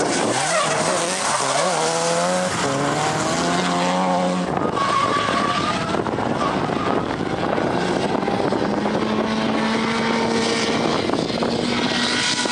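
A drift car's engine revving hard, its pitch climbing and dropping over the first few seconds and then holding steadier, over tyre squeal as the car slides sideways through the corners.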